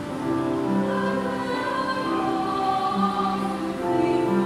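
Choir singing a slow hymn, several voices holding long sustained notes that move to new pitches every second or so.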